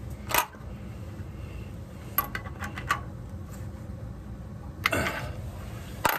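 Small adjustable wrench clicking against the brass body of a steam boiler's automatic water feeder as its strainer screen is tightened back in: a few sharp metal clicks, one just after the start, a quick run of them around two seconds in, and more near the end. A steady low hum runs underneath.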